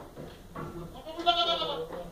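A Boer goat bleating once, a call of about a second and a half that grows louder in its second half.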